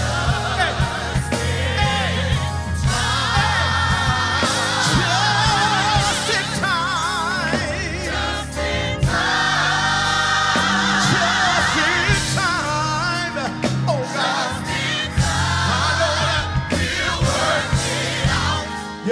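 Gospel choir singing in full harmony with live band accompaniment, the voices holding long, wavering notes over a steady bass.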